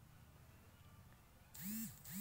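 Near silence: quiet room tone in a pause in speech, with a voice starting up again near the end.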